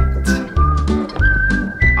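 Background music: a heavy, pulsing bass beat with a high, whistle-like melody over it.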